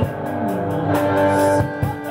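A live rock band playing over outdoor PA speakers, led by an electric guitar, with steady beats.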